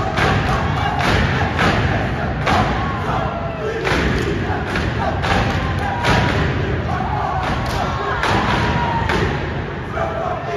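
A step team stamping and clapping in unison: sharp thuds at an uneven rhythm, about one or two a second, with shouting voices between them.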